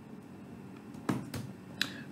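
Three sharp clicks of computer keyboard keys being pressed, about a second in, over quiet room tone.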